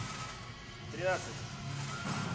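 A man's single short voiced cry about a second in, given during a straining seated cable-row set, over a steady low background hum.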